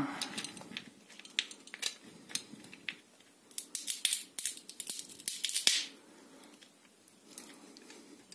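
A walnut shell half cracking under the squeeze of a pipe wrench's jaws: scattered small clicks, then a cluster of sharp cracks and snaps about halfway through as the shell gives way.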